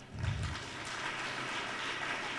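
Audience applauding: a steady patter of many hands clapping, with a brief low thump as it begins.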